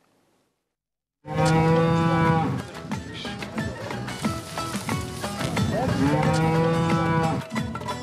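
Cattle mooing: a long moo about a second in, then a second moo near six seconds that starts with a rising pitch, with knocks and clatter in between.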